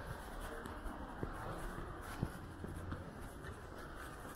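Street ambience heard while walking on a wet pavement: a steady muffled hiss with a few sharp ticks, the strongest about a second and about two seconds in.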